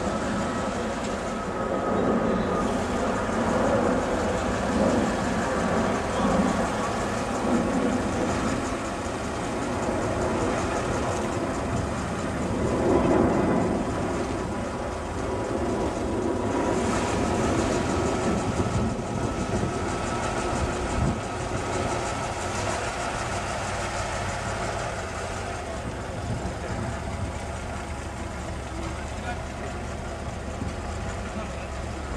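The six-cylinder engine of a 1907 Rolls-Royce Silver Ghost running as the car drives slowly across grass, with crowd voices around it.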